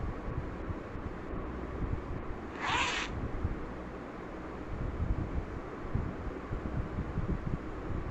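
A single short zipper sound effect, a quick swish, about three seconds in, over a steady low background rumble.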